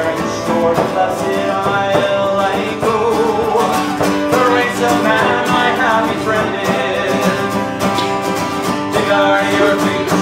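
Live acoustic folk band playing, with a strummed acoustic guitar to the fore and a melody line wavering over the steady chords.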